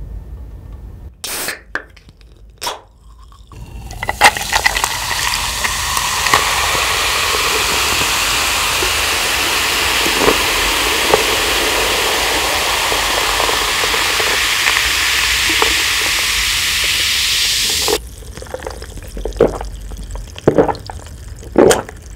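A can of carbonated soda is opened with a couple of sharp clicks, then poured into a glass for about fourteen seconds, making a loud, steady fizzing hiss as the glass fills. The pour stops abruptly, followed by a few short sounds of the glass being handled.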